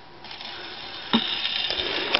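Acoustic gramophone's needle set down onto a spinning shellac 78 rpm record, with a sharp click a little over a second in. The click is followed by steady hiss and crackle of surface noise from the lead-in groove, played through the horn.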